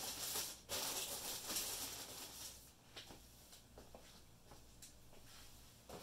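Plastic wrapping and packaging rustling as it is handled. The rustle is loudest in the first couple of seconds, then gives way to a few light clicks and taps over a low steady hum.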